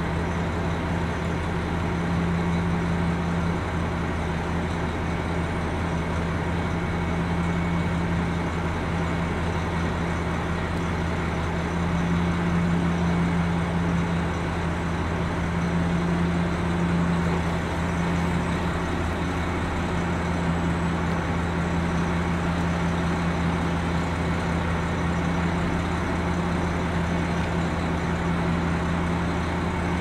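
KiHa 261 series diesel railcar idling while standing at the platform: a steady, low engine hum that swells slightly around the middle.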